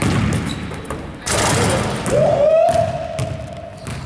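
Basketball thumping on a hardwood gym floor as a player drives in, then a sudden loud slam about a second in from a dunk hitting the rim. A long single held yell follows and cuts off near the end.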